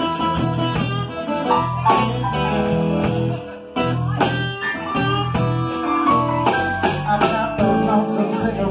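Electric blues band playing live: electric guitar over bass guitar, drums with cymbal hits, and keyboard.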